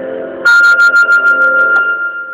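Piano music from a home cover of a rock ballad: a held chord, then about half a second in a loud high note comes in over a quick flutter of sharp clicks, and the note keeps ringing as the clicks stop near the end.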